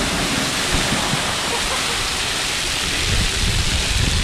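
Water spraying and pouring down onto a wet wooden deck in a steady, heavy rush, like a downpour.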